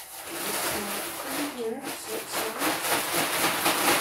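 Plastic potting-soil bag crinkling and rustling as it is handled and shaken out over a pot, with the last of the soil dropping out. The rustling grows louder toward the end.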